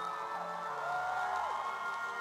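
Live amplified rock-orchestra music, with sustained notes that slide down in pitch, over the cheering of a large concert crowd.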